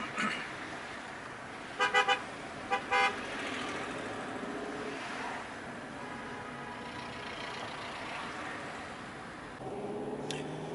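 A car horn giving three quick toots about two seconds in, then two more just under a second later. Underneath runs steady road and engine noise, heard from inside a moving car.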